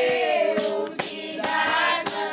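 A group of voices singing a devotional bhajan together, holding and sliding between long notes, with a jingling hand percussion such as a tambourine shaken on each beat, a little over one beat a second.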